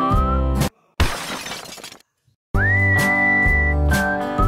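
Whistled tune over guitar background music that cuts off suddenly, then a glass-shattering sound effect that fades out over about a second. After a short silence the music comes back with one long held whistle note.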